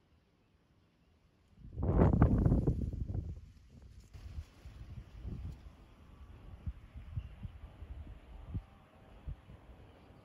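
Wind buffeting the microphone: a strong gust about two seconds in lasting a couple of seconds, then lighter uneven low thumps and rumbles.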